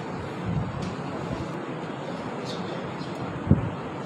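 Steady hall room noise with low thumps of a microphone being handled, the sharpest and loudest about three and a half seconds in, as it is positioned on its stand.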